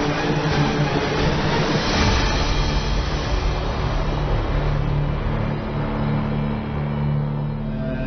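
Background music gives way about two seconds in to a car engine running with a steady low rumble and hum as the car pulls up.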